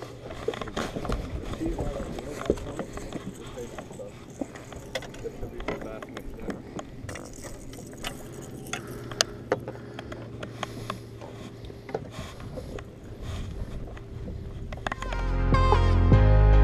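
Fishing rods, reels and tackle being handled on a bass boat's deck: scattered clicks and knocks over steady low background noise. Music comes in near the end.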